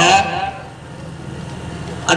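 A man's amplified voice on a microphone ends a phrase about half a second in, followed by a pause filled with a steady low hum and background noise.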